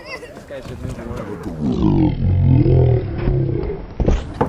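An American bison bellowing: one long, low, loud roar starting about one and a half seconds in and lasting about two seconds.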